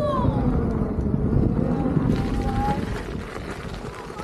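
Electric unicycle tyres rolling over a wooden plank bridge, with wind rushing over the microphone. About halfway through the sound turns to a gritty hiss as the wheels come onto loose gravel.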